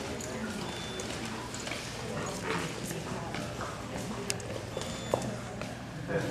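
An American Staffordshire Terrier's claws clicking on a concrete floor as it walks on a leash, over indistinct background talk.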